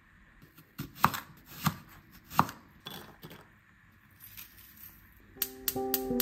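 Diced carrots being tipped and scraped off a wooden chopping board into a ceramic bowl: a few sharp knocks and clatters of board and pieces against the bowl. Light background music with plucked notes starts near the end.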